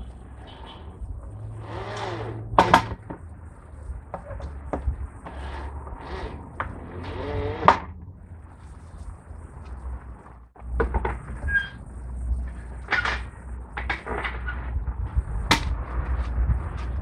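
Cordless drill driving screws through an MDF base into a wooden branch stump, running in short whirring bursts, mixed with sharp knocks and clatter from handling the wood and the board.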